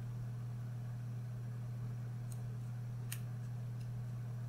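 Steady low hum throughout, with two faint snips of hair-cutting scissors a little past two and three seconds in.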